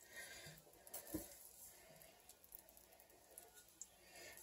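Near silence, with faint wet stirring of thick tomato soup by a wooden spatula in an enamelled cast-iron pot, and one soft knock about a second in.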